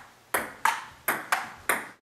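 Table tennis ball clicking in a quick rally-like series: five sharp pings at uneven spacing, each ringing briefly before the next.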